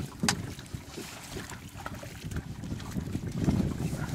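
Wind buffeting the microphone on an open boat: an uneven low rumble that swells near the end, with a single sharp click shortly after the start.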